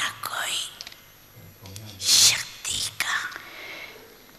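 Soft, breathy speech in three short phrases with brief pauses between them.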